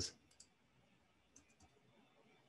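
A few faint, separate clicks of a computer mouse in near silence.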